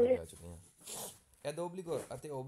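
A man speaking, with a pause in which a short breathy hiss is heard about a second in.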